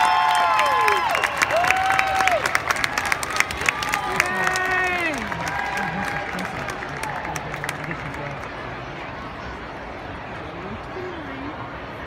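Arena crowd clapping and cheering, with high whooping voices, for about the first five seconds, then dying down to a steady crowd murmur.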